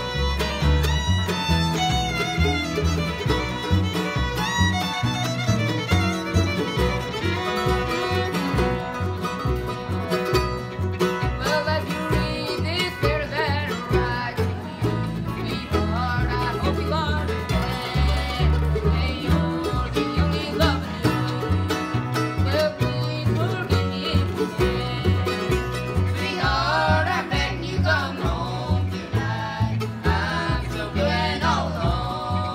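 Acoustic bluegrass band of fiddle, mandolin, acoustic guitar and upright bass playing an instrumental passage at a steady, lively tempo, with the bass keeping an even beat.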